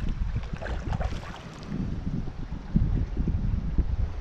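Wind noise buffeting the microphone, with a hooked jack pike splashing and thrashing at the surface of the water.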